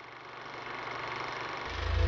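A rising whoosh sound effect that swells steadily, ending in a deep bass boom near the end as an animated logo intro builds toward its music.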